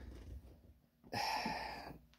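A man's breath, drawn in audibly and lasting most of a second, starting a little past halfway. Before it comes a faint low rumble.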